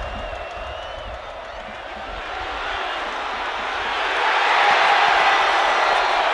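Football stadium crowd cheering, a dense roar of many voices that swells louder over the first few seconds and holds loud near the end.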